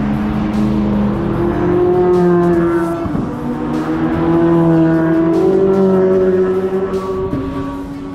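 C8 Corvette Z06s, with flat-plane-crank 5.5-litre V8s, passing on the track under power one after another. The engine note holds and swells, drops away about three seconds in, then a second car's note takes over.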